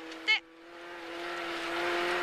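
Rally car at speed heard from inside the cabin: a steady hum under a rush of engine and road noise that builds steadily louder, after a brief word from the co-driver at the start.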